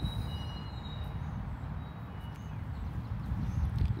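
Low, unsteady outdoor background rumble, with a few faint thin high whistles.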